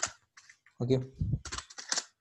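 A few computer keyboard keystrokes, sharp clicks.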